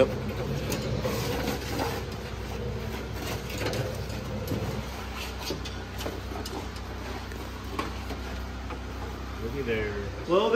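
Old rusted brake line being pulled out along a truck's frame: a few light scrapes and clicks of the metal line over a steady low hum.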